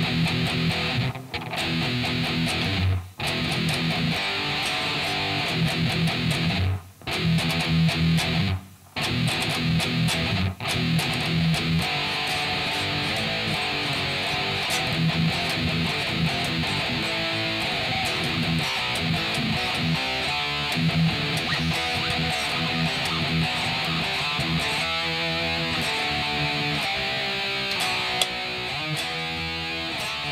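Grass Roots (ESP) Explorer GMX-48 electric guitar played as riffs, with several brief stops in the first ten seconds, then played on without a break.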